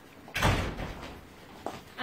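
A single loud thump with a brief rush of noise about half a second in, dying away within half a second, then a faint click near the end.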